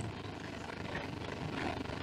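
Steady low background hum of the room: even room tone with no distinct events.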